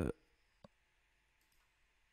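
A single short computer mouse click, otherwise near silence.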